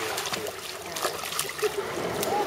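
Irregular splashes of feet wading through shallow sea water.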